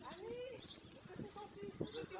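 Faint voices of people talking, with one drawn-out voiced sound early on.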